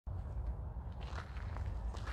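Faint footsteps crunching on a gravel path over a low, steady rumble.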